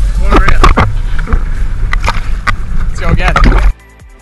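A man's voice calling out close to the microphone over a heavy, steady rumble of wind and choppy water on an action camera held at the sea's surface; the sound cuts off suddenly near the end.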